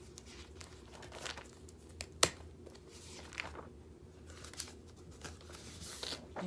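Sheets of printed paper rustling and shuffling as they are leafed through by hand, with one sharp tap about two seconds in.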